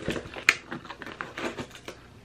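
Plastic and cardboard packaging being pulled and torn open by hand: a run of small clicks and crinkles, with one sharp snap about half a second in.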